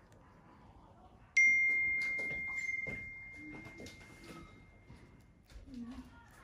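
A single bell-like ding about a second and a half in: one clear high tone that rings and slowly fades over about three seconds, over faint clicking and handling noise.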